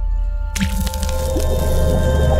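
Logo intro sting: electronic music over a strong bass drone, with a wet splash sound effect hitting suddenly about half a second in.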